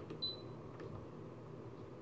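A sharp click of a front-panel control on a Siglent SDS1104X-E digital oscilloscope, followed at once by a short, high beep, then a fainter click; a low steady hum runs underneath.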